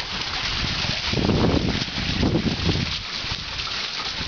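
A shallow creek running in a steady rush, with two louder, lower rumbling stretches about one and two and a half seconds in.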